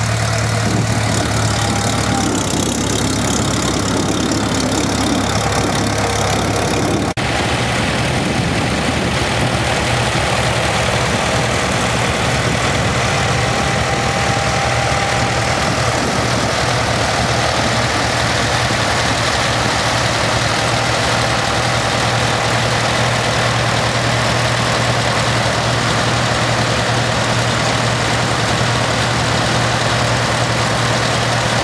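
International Harvester tractor engine idling steadily.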